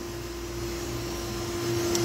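Steady rush of water splashing from an inlet pipe into a fiberglass fish-rearing tank, over a constant machinery hum.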